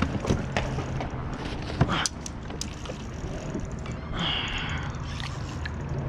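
A spinning reel being cranked while a hooked fish is fought from a kayak, with sharp clicks and knocks from handling the rod and net in the first two seconds and a short hissing burst about four seconds in.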